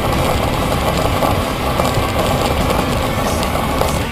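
Steady wind rush and road noise picked up by a camera on a moving road bike.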